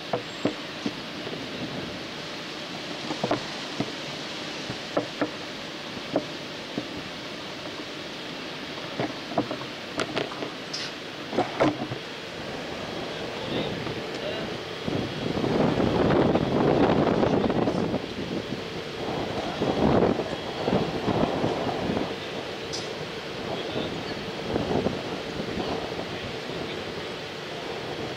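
Wind buffeting the microphone, with scattered clicks from the camera being handled. A louder gust of wind noise comes about halfway through, and a faint distant voice is heard at times.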